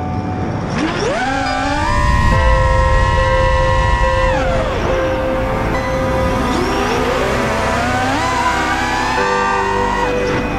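A 5-inch FPV quadcopter's Cobra 2204 1960KV brushless motors and tri-blade props whine in flight, the pitch rising and falling with the throttle. The whine climbs over the first couple of seconds, holds high, drops about halfway through, then climbs again near the end. Background music plays underneath.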